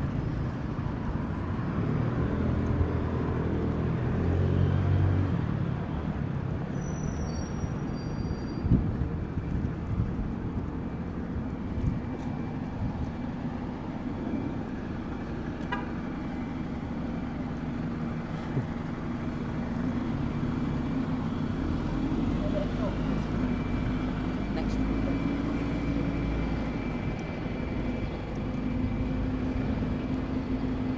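Traffic on a busy city road: cars and buses driving past, with a steady low engine hum through the second half.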